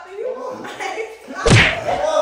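A throw pillow whacking hard: one loud thud about one and a half seconds in, over voices.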